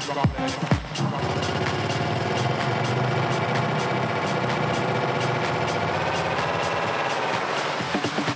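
Live techno: the four-on-the-floor kick drum drops out about a second in, leaving a dense, rapidly pulsing buzzing synthesizer texture for a breakdown. The kick comes back at the very end.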